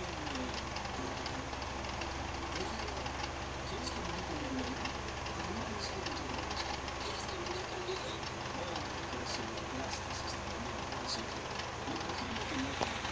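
Film soundtrack playing from a television speaker and picked up in the room: soft, indistinct voices over a steady low hum.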